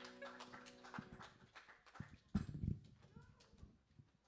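The last strummed chord of an acoustic guitar rings out and fades within the first second. Scattered clicks, knocks and footsteps follow as people move about a small stage and handle a music stand, with a few heavier thumps about two and a half seconds in.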